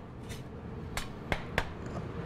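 Metal spatula striking and scraping a flat-top griddle as thin Swedish pancakes are cut into strips, with three sharp clicks in quick succession about a second in, over steady low kitchen noise.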